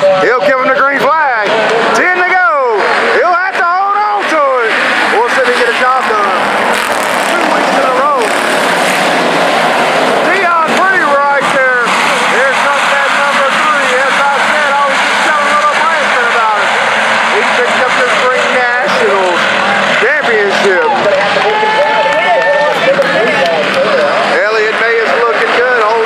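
A pack of IMCA Hobby Stock race cars running on a dirt oval, their engines revving up and down, with pitch sweeps rising and falling as the cars pass.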